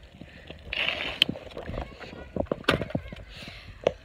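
Irregular clicks and knocks with a short rush of noise about a second in: a bicycle rattling and its rider's handheld camera being jostled as the bike comes to a stop.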